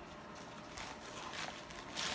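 Faint rustling and light handling noises of a cardboard box and paper packaging as a small palette is taken out of it.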